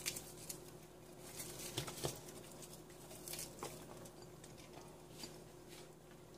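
Sliced onion pieces dropped by hand onto fish in a metal wok, making faint, scattered light ticks and patters at irregular moments, over a faint steady hum.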